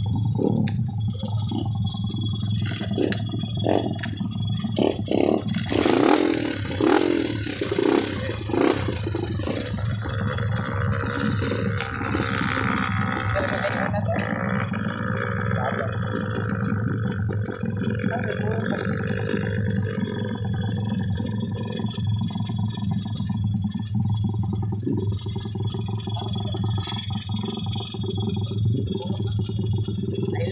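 Dirt motorcycle engines running: a steady low idle throughout, with a run of short revs from about two to nine seconds in, then a longer wavering engine note through the middle.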